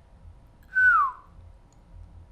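A man's single whistled note, held briefly and then sliding down in pitch, about half a second long: a falling whistle of disbelief.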